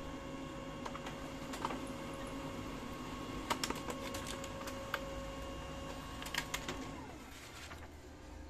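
Brother HL-2035 laser printer printing a configuration page: a steady motor whine with scattered sharp clicks from the paper feed. About seven seconds in, the whine winds down with a falling tone as the printout finishes.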